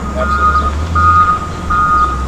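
Backup alarm of a wheel loader beeping steadily as the machine reverses, about three beeps in two seconds, over the low, steady rumble of its diesel engine.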